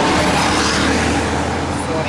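Road and engine noise heard from inside a moving car, with a city bus passing close alongside; a steady low hum under a broad rush, loudest about the first second.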